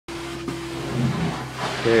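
Hot-water carpet extraction wand spraying and vacuuming glue-down commercial carpet tiles: a steady suction hiss over a constant machine hum, with a short click about half a second in.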